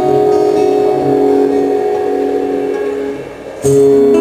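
Acoustic guitar chord ringing out and slowly fading, then a new chord struck about three and a half seconds in.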